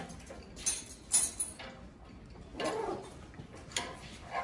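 A few light, separate metallic clicks and taps from a pair of locking pliers (vise grips) being handled and adjusted.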